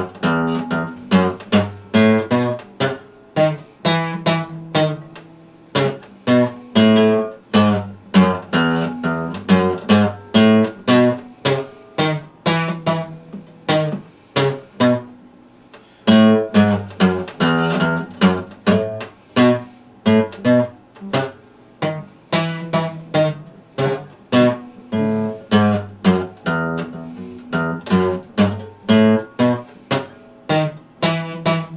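Epiphone dreadnought acoustic guitar played solo, chords picked and strummed in a steady rhythm of about two or three attacks a second. There is a brief pause a little before halfway through.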